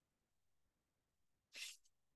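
Near silence, broken about one and a half seconds in by a single short, faint hiss of breath, a person drawing in air before speaking.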